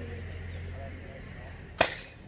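A single sharp shot from a paintball-style air gun near the end, followed at once by a fainter click. A steady low hum runs underneath before it.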